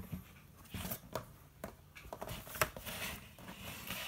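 Cardboard toy box being handled: scattered light taps, knocks and rustles, the sharpest about two and a half seconds in.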